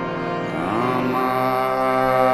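Devotional Hindu chant music for Shiva: long held tones over a steady drone, with a pitch slide about half a second in.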